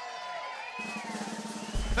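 Live band vamping on stage between introductions: drum kit with held guitar and keyboard notes, a low bass note swelling up near the end.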